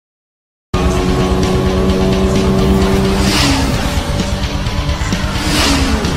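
An outro sound effect track comes in abruptly after a second of silence: music mixed with a sports-car engine effect. Two whooshing swells of noise come about three and five and a half seconds in.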